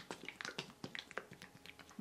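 Faint, irregular clicks and taps of a soft plastic gel bottle being handled.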